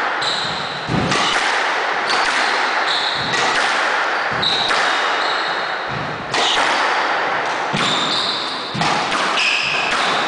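Squash rally: the ball struck by rackets and hitting the walls and wooden floor of the court, a sharp strike every second or so, each echoing briefly. Short high squeaks of players' shoes on the floor come between the strikes.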